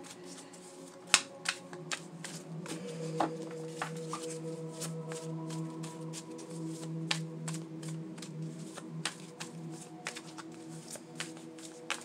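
A deck of tarot cards being shuffled by hand: a run of quick, light card clicks and riffles, with one sharper snap about a second in, over soft background music of long held tones.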